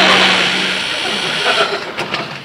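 Studio audience laughing after a punchline: a full burst of crowd laughter that fades out near the end.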